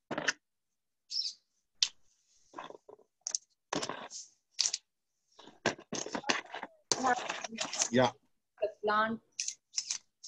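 Pieces of charcoal and small stones clicking and rattling in irregular handfuls as they are dropped and mixed into an orchid planting cone.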